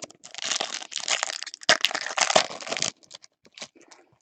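Foil trading-card pack wrappers crinkling and crackling as they are handled and crumpled, for nearly three seconds, followed by a few light ticks.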